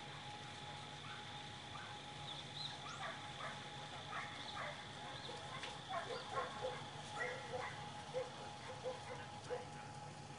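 A dog barking in a string of short barks, growing more frequent and louder in the second half.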